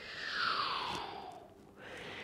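A man's long, airy breath lasting about a second and a half, falling in pitch, as he folds forward into a standing roll-down, then a fainter breath near the end.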